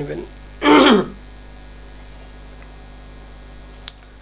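A man clearing his throat once, about half a second in, over a steady low electrical mains hum on the microphone line; a single sharp click near the end.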